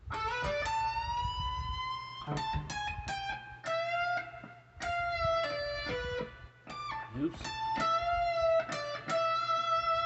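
Electric guitar (a Schecter) through an amp, playing a lead run of picked notes high on the neck. About a second in, one note is bent slowly upward and held, and later notes ring out long. A steady low hum runs underneath, and a note is fluffed near the end.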